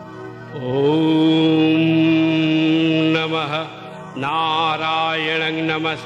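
A man chanting a Sanskrit devotional mantra to Durga over a steady musical drone. The voice comes in about half a second in with a long held note, breaks off briefly near four seconds, and resumes with a moving phrase.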